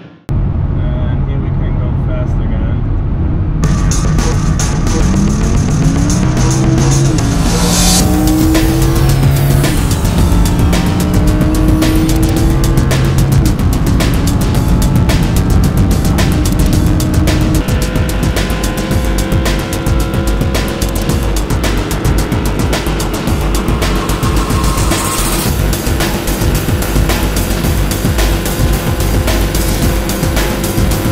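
Lamborghini Huracán LP610-4's V10 engine at full throttle, heard from inside the cabin with road and wind noise, as the car pulls through its top gears at well over 250 km/h. A music track plays over it. The sound starts after a brief silence at the very start.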